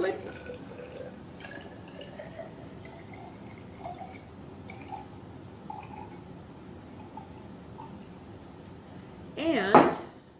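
Liquid poured from a large glass bottle into a glass graduated cylinder: a soft, steady trickle with a faint tone that rises slowly as the cylinder fills. Just before the end there is a short, loud burst of a woman's voice.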